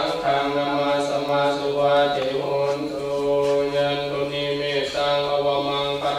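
Buddhist monks chanting Pali scripture together in a steady, near-monotone recitation, with a few short pauses for breath.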